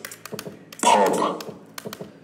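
A short voice-like sound sample, about half a second long with a falling pitch, played back by a phone app when one of its sample buttons is tapped, a little under a second in. Light clicks come and go around it.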